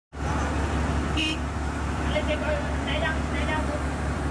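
Steady low rumble of vehicle engines and road noise, with people talking in between.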